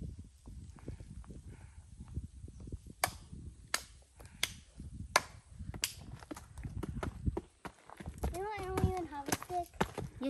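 Footsteps on a dirt hiking trail with dry leaves, uneven thuds, with a run of five sharp, evenly spaced clicks like shoes striking hard ground or stone steps in the middle. A child's voice is heard briefly near the end.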